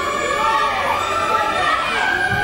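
Operatic singing: several voices singing at once, with wide vibrato on held high notes that waver up and down.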